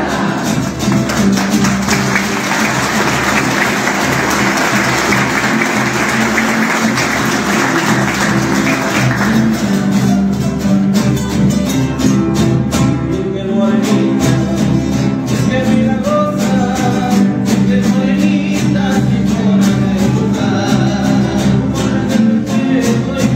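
Folk group serenading: several acoustic guitars strummed, with voices singing and a bombo drum. For roughly the first nine seconds a rush of clapping sits over the music.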